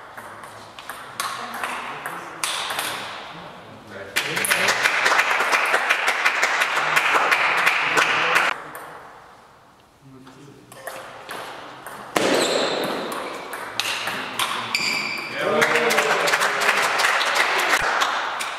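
Table tennis ball clicking off the bats and the table in a rally, twice. After each rally come several seconds of spectators clapping, with shouts from the crowd in the second burst.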